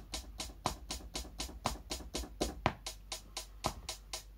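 Software hi-hat sound played from a MIDI keyboard into GarageBand as sixteenth notes at 60 bpm: a fast, even run of short ticks, with a stronger tick about once a second.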